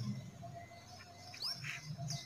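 A bird chirping a few short times over faint outdoor background.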